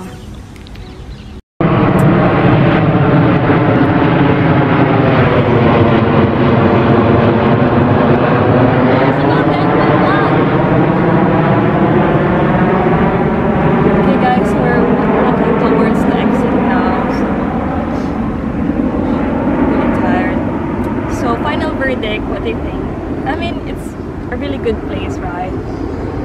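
A jet aircraft passing low overhead: a loud, steady rush with slowly sweeping tones, starting abruptly about a second and a half in and easing off a little toward the end.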